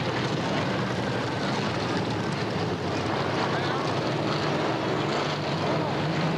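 Dirt-track modified race car engines running with a steady rumble, with voices mixed in.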